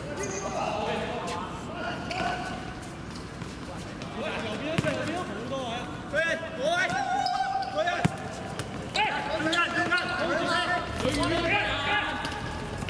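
Footballers shouting and calling to one another during play on a hard-surface pitch. Two sharp thuds of the football being struck come a little before halfway and again about two-thirds through.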